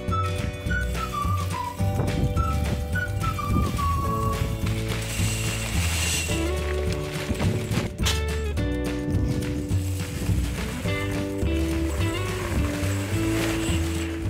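Background music: an instrumental track with a pulsing bass line, held tones and a steady clicking beat.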